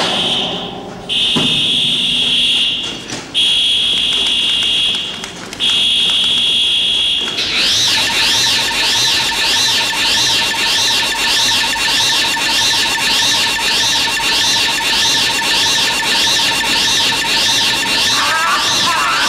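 Electronic signal tones: four long, high beeps of about a second each, then a warbling tone that sweeps up and down nearly twice a second over a steady lower tone.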